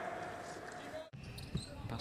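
A basketball bouncing faintly on a hardwood court under the low hum of a near-empty arena with no crowd noise. The ambience changes abruptly about a second in.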